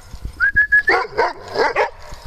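Dogs at play: one brief high, steady whine, then a quick run of about four barks in the second half.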